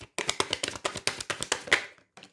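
Deck of oracle cards being shuffled by hand, a rapid run of crisp card slaps and clicks, about ten a second, stopping just before the end.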